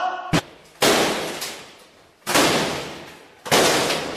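A short knock, then three heavy bangs on an apartment door, one about every second and a half, each echoing and dying away: the door being battered to force it open.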